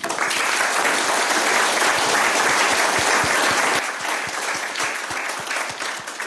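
Audience applauding, starting suddenly and thinning out toward the end.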